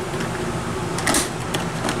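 Upper door of an RV four-door refrigerator being swung shut, with a short noisy burst about a second in, over a steady low hum.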